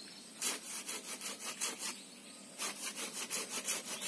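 Hand saw cutting through a waru (sea hibiscus) tree branch, with quick back-and-forth strokes at about four a second. The sawing stops for about half a second midway, then starts again.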